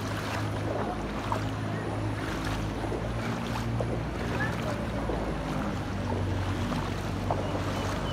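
Floodwater sloshing and splashing around wading legs, over a steady low rumble.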